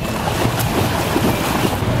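Pool water splashing as a child kicks and swims across it.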